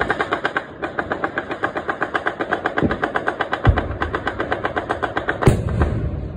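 A sustained run of rapid, evenly spaced bangs, about ten a second, from New Year's Eve celebratory firing. A few louder, deeper booms stand out among them, the loudest a little past halfway and another near the end.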